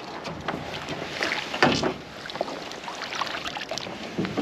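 Water splashing and knocking as a hooked pike is scooped into a landing net beside a boat and brought aboard, the loudest splash coming about a second and a half in.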